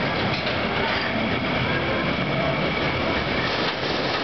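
Steel roller coaster cars rolling along the track into the station with a steady rattling rumble of wheels on rail.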